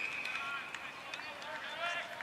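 Field umpire's whistle, one long steady blast that stops about a second in, followed by players calling out.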